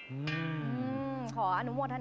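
A drawn-out, low, falling voiced sound like a moo, lasting about a second, over a steady sustained background chord. A woman starts speaking near the end.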